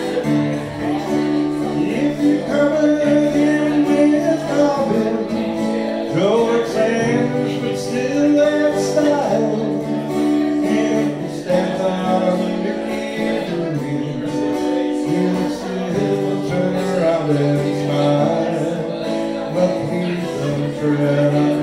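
Man singing a folk song, accompanying himself on an acoustic guitar, with long held vocal notes.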